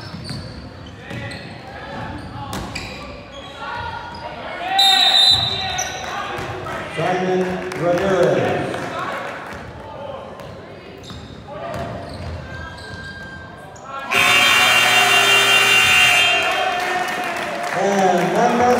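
Basketball gym sounds: voices and a ball bouncing on the hardwood floor, with a short, shrill referee's whistle about five seconds in. About fourteen seconds in, the scoreboard's end-of-game horn sounds loudly and steadily for about three seconds, signalling the final buzzer.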